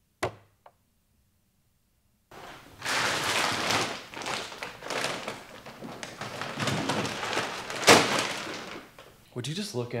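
A plastic water bottle set down on a wooden workbench with one short knock. About two seconds later come several seconds of rustling and clattering handling noise, with a loud thunk about eight seconds in.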